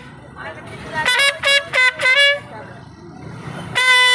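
Solo trumpet: a short phrase of about five notes about a second in, a pause filled by street traffic noise, then a long held note starting near the end.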